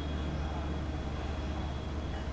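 Steady low background rumble and hum, with a faint thin high whine running through it.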